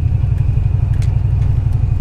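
Pickup truck's engine and road noise heard from inside the cab while driving: a loud, steady low rumble.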